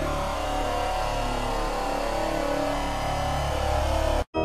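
Heavily effects-processed electronic logo soundtrack: a dense, steady wash of distorted sound over a low drone, with no clear melody.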